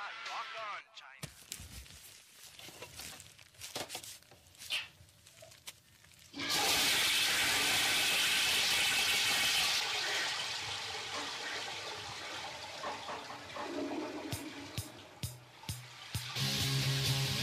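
A sudden loud rushing noise, like rushing water, about six seconds in, steady for a few seconds and then slowly fading; before it, scattered clicks and faint sounds, and a pitch-bending voice trailing off at the very start.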